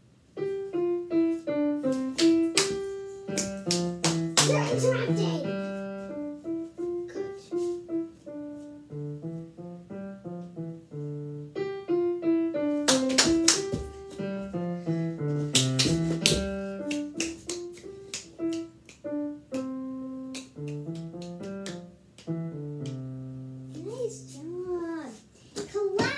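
Digital piano playing back a recorded two-hand piece: a melody over a bass line, the phrase starting over about halfway through. A few sharp clicks or taps sound over it.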